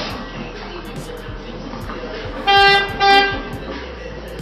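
Background music with a steady beat, broken about two and a half seconds in by two short, loud horn-like toots, the second following right after the first.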